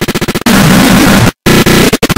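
Heavily distorted, clipped audio effect: a rapid stuttering loop, then a harsh noise burst that cuts out for a split second and gives way to stuttering again.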